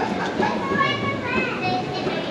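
Indistinct children's voices and chatter over the steady background hubbub of a shopping mall concourse.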